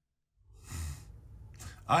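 A man sighs: one breathy exhale, about half a second long, starting about half a second in, followed by a faint breath before he begins to speak near the end.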